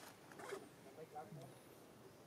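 Near silence, with a few faint short clicks and rustles and faint distant voices.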